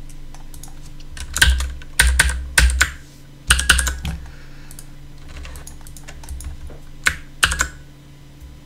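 Computer keyboard keys struck in short irregular bursts of a few clicks each, with pauses between, over a faint steady low hum.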